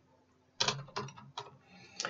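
Computer keyboard keys clicking as a few characters are typed: a handful of sharp keystrokes roughly half a second apart, starting about half a second in.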